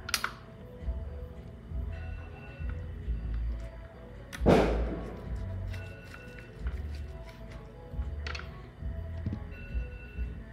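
Kitchen knife cutting through a rolled kimbap and striking a plastic cutting board: a few separate thunks, the loudest about halfway through. Quiet background music plays underneath.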